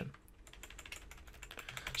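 Computer keyboard keys tapped in a quick run of faint clicks.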